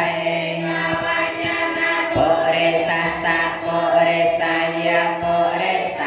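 Buddhist monk students chanting Pali in unison on one steady, droning pitch, reciting the singular and plural case forms of the masculine noun purisa ('man').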